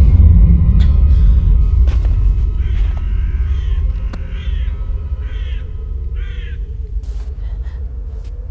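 Deep, loud rumbling drone of a horror film score, slowly fading, with a crow cawing about five times in the middle.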